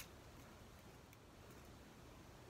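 Near silence: room tone, with a faint click at the very start.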